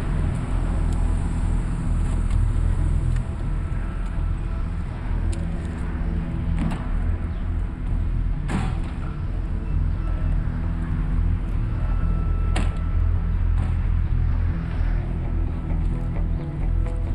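Car engine running with a steady low rumble as the sedan pulls up, and three sharp car-door clunks about seven, eight and a half and twelve and a half seconds in.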